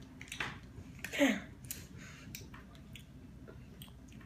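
Jellybeans being chewed close to the microphone: soft, wet, irregular clicks of chewing. About a second in there is one brief hum from a chewer, falling in pitch.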